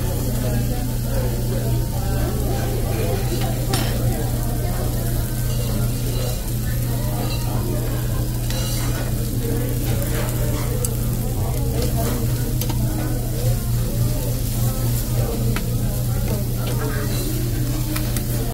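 Food being stirred and mixed with a utensil in a dish, with scattered light clicks of the utensil against the dish over a steady low hum.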